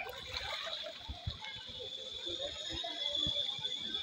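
Lake water sloshing and splashing, with indistinct voices and a steady high-pitched buzz behind.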